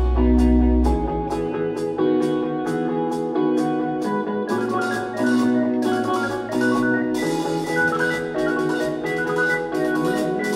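Live progressive rock band playing an instrumental passage, heard in the hall from the audience. Regular high ticks two or three times a second run under changing keyboard and guitar notes, and a held low bass note drops out about a second in.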